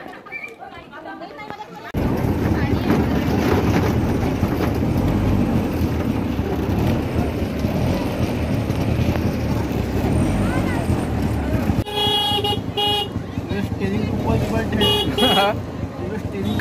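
Road traffic noise with vehicle engines running, starting abruptly about two seconds in. A vehicle horn gives two short toots about three quarters of the way through and honks again near the end.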